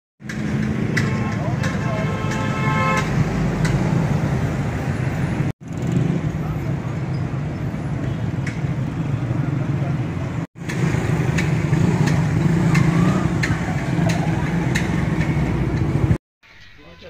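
Busy street traffic with vehicle engines running and a horn sounding about two seconds in. The sound drops out briefly twice.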